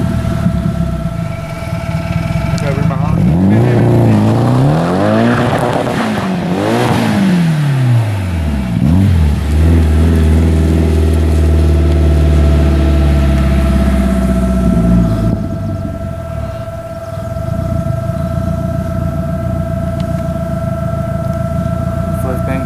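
Nissan S13 drift car's engine revving hard, its pitch swinging up and down several times, then held at high revs for several seconds before easing off about fifteen seconds in.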